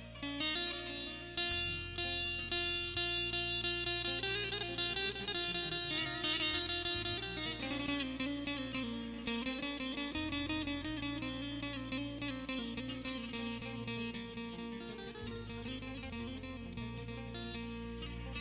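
Electric saz (bağlama) picked with a plectrum, playing a melodic instrumental line with quick repeated notes. Underneath runs a steady low accompaniment that changes note every second or two.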